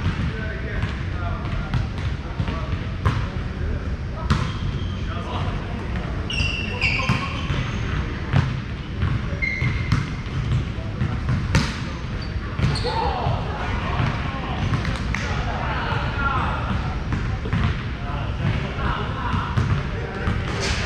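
A volleyball being hit and bouncing during play, with a dozen or so sharp irregular smacks, a few short high squeaks, and people's voices in the background.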